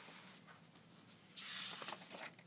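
Paper rustling as a sketchbook page is handled and turned, with a brief swish of paper about one and a half seconds in.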